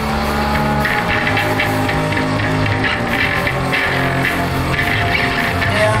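Instrumental passage of a hard rock song: a steady drum beat over a bass line moving in held notes, with no singing.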